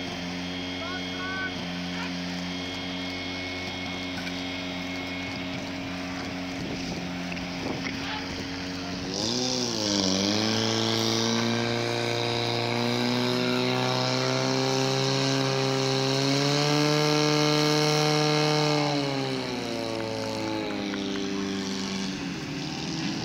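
Portable fire pump's engine idling, then revving up about nine seconds in and running at high speed under load as it pumps water through the attack hoses. It drops back down near the end.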